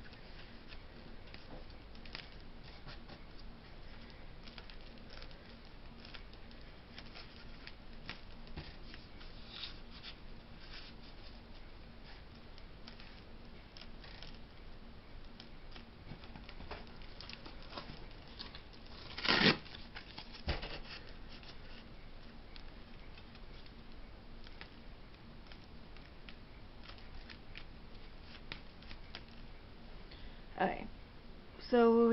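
Faint handling sounds on a tabletop: soft scrapes, rustles and light taps as objects are moved about, with one sharp knock about 19 seconds in and a smaller one about a second later.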